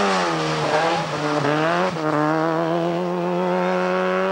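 Rally car engine running at high revs. The pitch dips briefly twice in the first two seconds, then holds high and steady.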